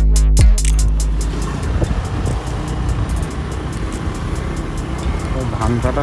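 Electronic dance music with heavy bass beats stops about a second in. Then comes the steady rumble and road noise of a vehicle being ridden along a road, and a voice comes in briefly near the end.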